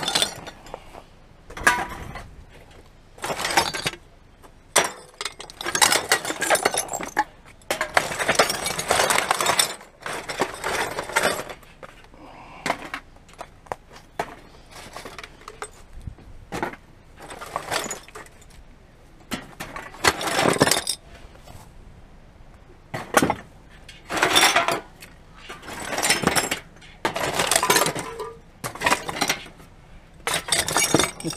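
Empty glass bottles and drink cans clinking and clattering in a rusty metal drum as they are grabbed and tossed onto a heap of containers, in a run of separate crashes about a second long with short pauses between.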